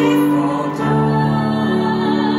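A woman singing a slow hymn in long held notes, accompanied by a digital piano; the notes change to a new chord just under a second in.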